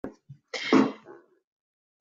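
A short, noisy non-speech vocal burst from a person, about half a second long and starting about half a second in, of the kind made by a sneeze or a throat clear. A faint click comes at the very start.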